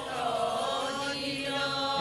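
Liturgical chant from the Syriac Orthodox service, sung as a slow line of held and gliding notes.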